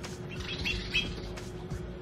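A few short, high bird chirps between about half a second and a second in, over a steady low hum.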